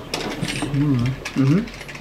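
A quick run of small clicks and rattling handling noise through the first second, with two brief stretches of low speech.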